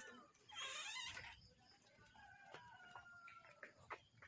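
Near silence, broken by a brief faint call with a wavering pitch about half a second in, then a few faint clicks.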